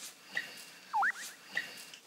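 A brief squeaky chirp, one quick up-and-down glide about halfway through with two faint short blips around it, over quiet room tone. It is a comic sound effect added in the edit to mark an awkward silence.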